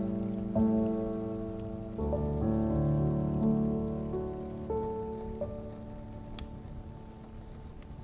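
Slow, gentle solo piano music: a few soft notes and chords that ring and die away, growing quieter toward the end. Under it a steady rain sound with scattered drop ticks.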